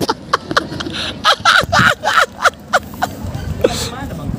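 A person laughing in short, irregular bursts that die away after about three seconds, with a low rumble beneath.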